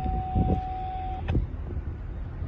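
A distant train horn holds one steady note for about a second and a half, over wind rumbling on the microphone.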